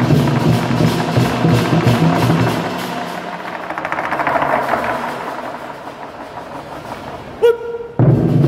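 Chinese lion-dance drums played together by a drum troupe. Loud, fast, driving drumming for about three seconds gives way to a rolling swell that builds and then fades. Near the end comes one sharp strike with a brief ringing tone.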